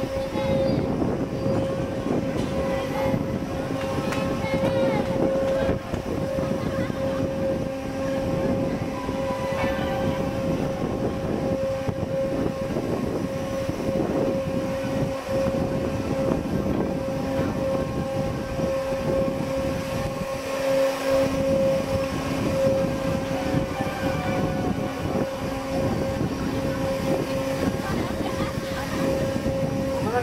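Balloon-race amusement ride in motion: the ride's machinery running with a steady hum over a rough rushing rumble, with faint voices mixed in.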